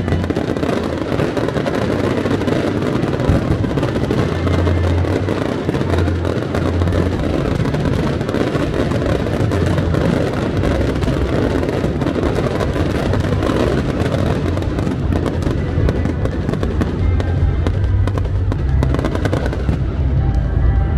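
Aerial fireworks bursting and crackling densely overhead, over loud music with strong bass.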